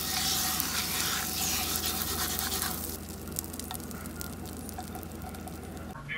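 Butter sizzling and scraping as a stick of it is rubbed across a hot frying pan, over a steady low hum. The sizzle is strongest for about the first three seconds, then drops to a fainter hiss with a few light clicks.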